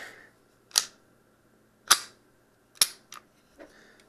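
Springfield XD Mod.2 9mm pistol being cleared by hand: three sharp metallic clacks about a second apart as its slide and magazine are worked, and a softer click near the end.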